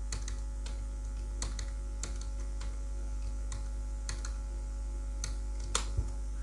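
Computer keyboard being typed on in short runs of key presses, with a louder key press near the end, over a steady low electrical hum.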